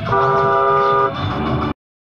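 Car horn sounding one steady blast about a second long, over cabin road noise. The sound cuts off abruptly near the end.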